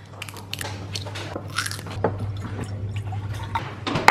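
Plastic screw cap being twisted on a bottle of apple cider vinegar: a run of small clicks and crackles over a steady low hum.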